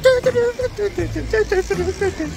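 A person's voice in short, quickly changing pitched phrases over a steady low rumble.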